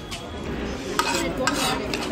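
Metal cutlery scraping and clinking against a serving platter and a ceramic plate as food is served, with a few light clicks.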